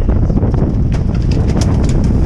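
Wind buffeting the microphone over a boat's steady low engine rumble, with a quick irregular run of sharp clicks, several a second, in the second half.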